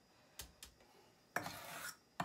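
A small metal measuring cup scraping batter out of a mixing bowl: a couple of light clicks, then a scrape of about half a second near the end.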